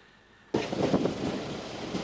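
Near silence, then a sudden start about half a second in of loud outdoor noise: wind buffeting the microphone over the low running of a vehicle engine.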